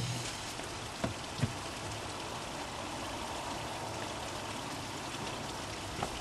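Steady rushing of running water, with two faint knocks about a second in.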